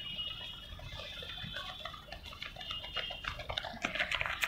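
Footsteps of a group of runners on concrete, faint at first and growing louder as they come closer, over a faint high-pitched chirping.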